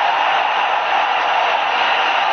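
Steady stadium crowd noise from a televised football match: an even, hiss-like wash with no distinct shouts or cheers.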